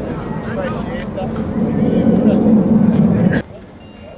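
Voices calling out across an outdoor football pitch over a low rumble that grows louder and then cuts off abruptly near the end.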